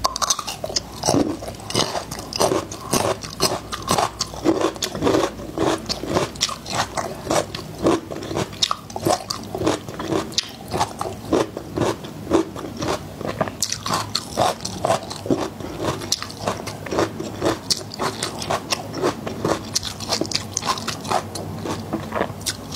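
Close-miked biting and chewing of whole peeled garlic cloves. A crisp crunch at the first bite is followed by steady, rhythmic chewing with fine crackling throughout.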